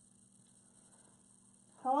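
A faint, steady electrical hum, with a person starting to speak near the end.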